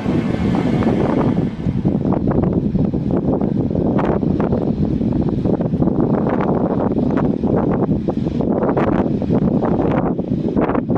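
Loud, steady wind noise on the microphone, with frequent brief gusts.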